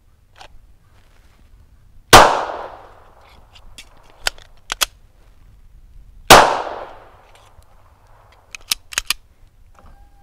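Two 9mm Glock 17 pistol shots about four seconds apart, each followed by a fading echo. Between them come sharp clicks of the magazine reload, and a few more clicks near the end.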